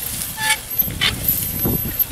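Animal-drawn row cultivator with shallow sweeps dragging through dry soil and crop residue, an irregular low scraping. Two short high-pitched toots sound about half a second and a second in.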